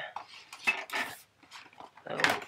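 A handful of short clicks and taps from packaging being handled, as a part is pushed to clip into place.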